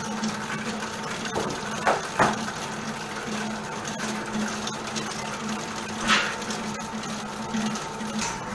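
Commercial planetary stand mixer running, a steady motor hum as its whisk beats the mix in a steel bowl. A few brief knocks about two seconds in and again around six seconds.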